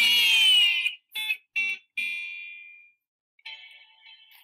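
Intro jingle music of a children's read-aloud video playing from the computer: a dense flourish of sweeping tones, then three short notes, the last ringing out and fading over about a second.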